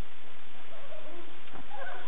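Steady outdoor background hiss, with faint distant voices calling out around the middle.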